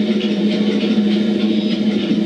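Live electronic music played on synthesizers: a steady low held note with a dense, flickering texture above it.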